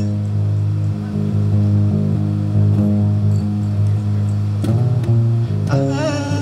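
Live band music in an instrumental passage, an electric bass guitar loudest with held low notes that change every second or so.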